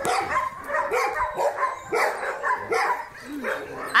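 Several kennelled shelter dogs barking at once, short calls overlapping one another without a break.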